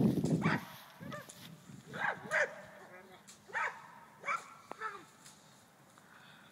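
A dog barking, about six short barks spread over a few seconds, with a low rumble on the microphone at the very start.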